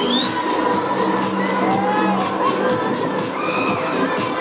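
Riders on a spinning Break Dance fairground ride screaming and shouting over loud ride music with a steady beat; a rising scream comes right at the start, with more cries through the middle.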